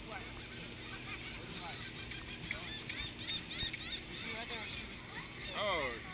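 Gulls calling over steady wind and ship noise: a scatter of short cries through the middle and a louder call near the end.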